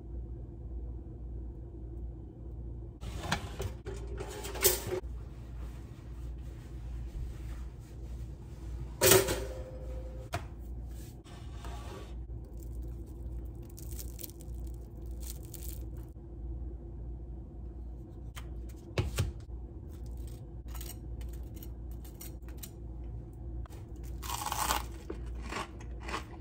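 Close-up chewing, biting and tearing of a slice of crusty gluten-free rice bread, over a faint steady low hum. A few louder bites and tears are spread through, the loudest about nine seconds in and another near the end.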